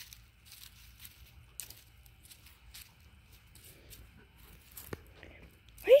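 A dog rummaging among firewood logs and dry leaf litter: light, irregular crackling and rustling, with one sharper click about five seconds in.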